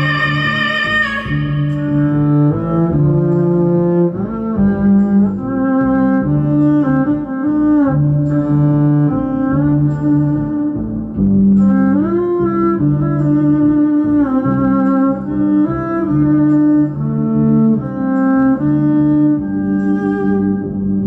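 Female voice finishing a long held sung note about a second in, then a bowed electric upright string instrument playing a slow melodic passage of sustained notes over a lower held note.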